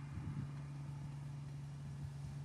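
Water tanker truck's diesel engine running steadily as the truck moves along at low speed, a constant low hum.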